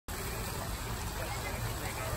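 Outdoor visitor ambience: indistinct distant voices over a steady low rumble and hiss.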